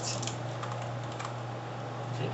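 Computer keyboard typing: a few scattered keystrokes as a short word is typed, over a steady low hum.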